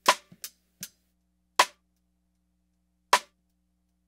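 Recorded snare-drum rim clicks from the snare-bottom mic, played back after mid-range EQ, limiting, saturation and a noise gate, so that only the rim comes through and the hi-hat bleed is shut out. Three sharp, dry clicks about a second and a half apart, each cut off short, with a few fainter ticks within the first second.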